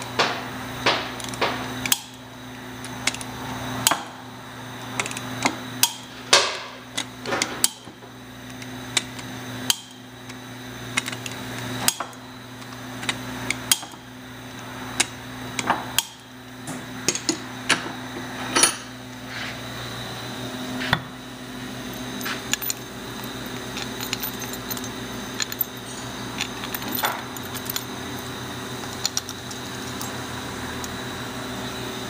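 Irregular sharp metallic clicks and clinks from a hand wrench as the hex-socket bolts on a gear pump's end plate are tightened to 40 foot-pounds, over a steady low hum.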